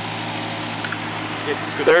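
1940s Ford tractor's four-cylinder flathead engine idling steadily, a low even hum.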